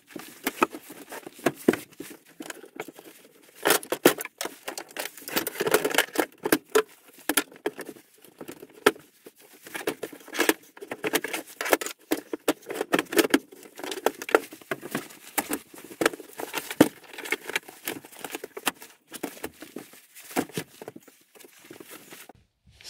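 Irregular rustling, clicks and light knocks of seat-belt webbing and metal buckles being pulled out from under a motorhome's dinette seat.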